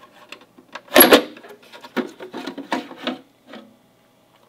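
Plastic case of a Verizon CR200A 5G gateway being shaken and slid off its black internal chassis. A sharp double knock comes about a second in, then a run of plastic rattles and scrapes that stops shortly before the end.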